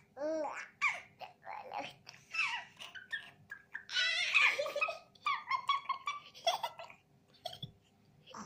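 A baby laughing and babbling while being played with, in short bursts with the loudest laughter about four seconds in.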